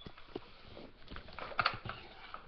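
Handling noise: a quick, irregular run of light clicks and taps, densest about one and a half seconds in.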